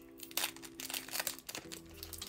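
Foil wrapper of a Pokémon TCG Evolving Skies booster pack crinkling in the hands as it is handled to be opened, a run of sharp crackles starting about half a second in. Soft background music with held notes runs underneath.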